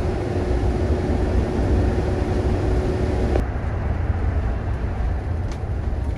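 Steady low road and engine rumble inside a moving RV's cab at highway speed. A faint steady hum in the mix and some of the higher hiss cut off abruptly about three and a half seconds in, while the rumble carries on.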